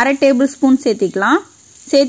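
A person talking over a steady sizzle of chopped onions, carrots and green chillies frying in oil in a pan. The talk stops about a second and a half in, leaving the sizzle alone.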